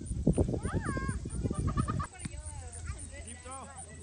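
Players' shouts and calls carrying across an open field during a soccer game, several voices overlapping. Wind buffets the microphone with a low rumble for the first two seconds, then eases.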